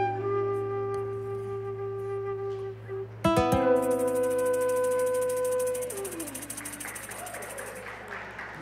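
The closing chord of a live acoustic song: acoustic guitar and flute hold notes that die away, then a final chord is struck about three seconds in. A tambourine shakes in a steady jingling roll over it while the flute holds a note and slides down in pitch near the six-second mark, and the sound fades out.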